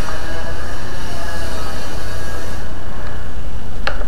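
Steady low background rumble with hiss, no speech, and a single short click near the end.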